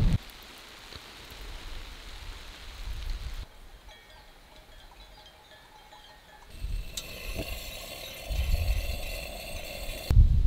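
Many small livestock bells of a grazing sheep flock, clinking and ringing together, loudest in the second half, over a low rumble of wind. Before the bells, a soft steady hiss.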